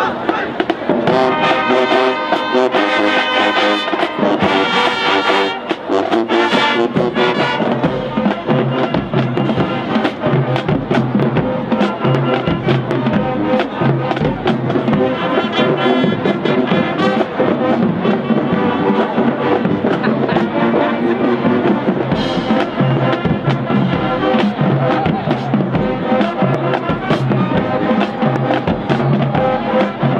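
A high school marching band plays loudly. Sustained brass chords from trumpets and trombones lead, and from about eight seconds in, drums keep a steady beat under the horns.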